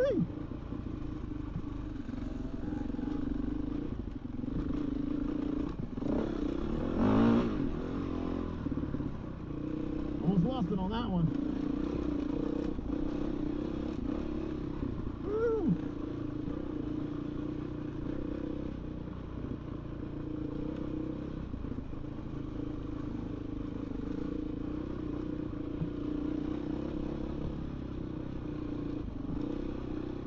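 Dirt bike engine running steadily at trail-riding pace, with a few brief throttle blips that rise and fall in pitch in the first half.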